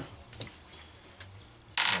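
A few faint clicks of a hand tool handled against a chainsaw's housing, with a short hiss near the end.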